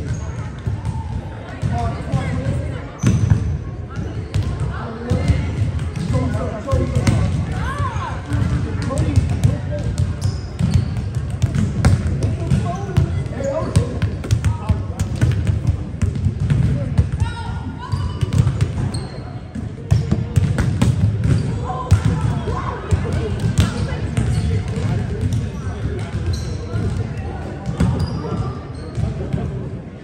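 Volleyballs being hit and bouncing on a wooden gym floor, a steady string of thuds and slaps through a large gym, over indistinct chatter from the players.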